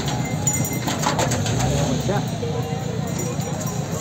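People's voices talking in the background. About a second in there are a few knocks and scrapes as a bull turns around on the straw-covered bed of a truck.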